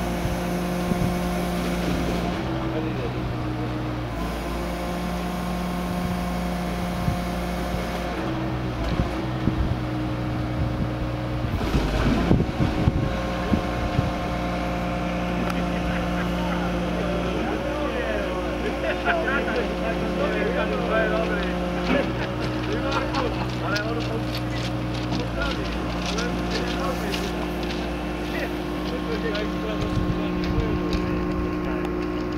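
The diesel engine of a DESEC TL 70 crawler-mounted track-laying machine running steadily as it moves along, with a clatter of metal about twelve seconds in and scattered short squeaks later on.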